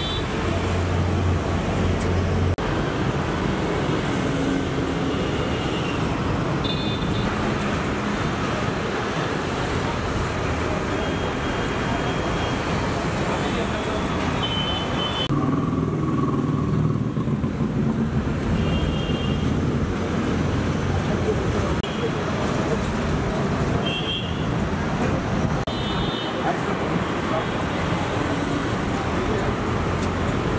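Street traffic noise with voices in the background and brief high beeps, like horn toots, now and then.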